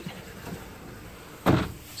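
A wood-framed wardrobe sliding door being slid open: one short rolling rumble about one and a half seconds in, after quiet room tone.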